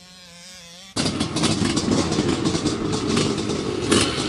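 Motocross bike engine running loudly with a crackly exhaust. It cuts in suddenly about a second in, after a faint steady hum.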